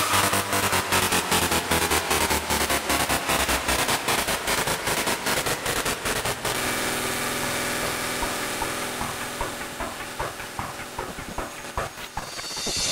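Hardstyle dance music from a DJ mix: a fast, evenly repeating electronic pattern that thins out about six and a half seconds in and fades steadily toward the end as the track winds down.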